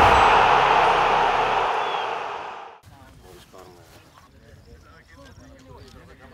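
A loud rush of noise that ends a video intro sting and fades out about two and a half seconds in. It is followed by faint, distant men's voices.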